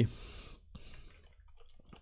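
A man breathing in at a close microphone during a pause in speech: a soft inhale, then a second shorter one just before a second in.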